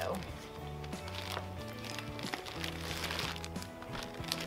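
Background music with a steady bass line, over the crinkling of a plastic zip-top bag being handled as a whole chicken is pushed into it; the crinkling is strongest a little past halfway.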